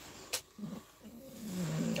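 A man's quiet, hesitant vocal murmur between sentences: a short click about a third of a second in, then a faint low hum that swells toward the end.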